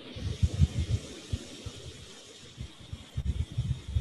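Stylus writing on a tablet or digital whiteboard. The pen strokes come through as irregular low knocks and taps, over a steady hiss.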